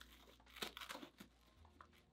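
Near silence with faint rustling and a few light clicks as an All-Star Cobalt umpire chest protector's hard plastic plates and padding are handled.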